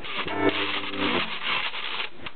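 Washboard scraped in a steady jazz rhythm, with a low brass note from the tuba sounding for about the first second.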